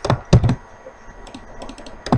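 Typing on a computer keyboard: a couple of heavy keystrokes near the start, then a quick run of lighter key taps in the second half.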